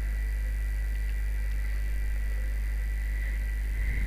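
Steady low hum with a faint, thin high whine: the background noise of the recording setup, with nothing else sounding.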